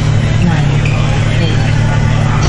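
Room ambience in a large hall: people talking in the background over a loud, steady low hum.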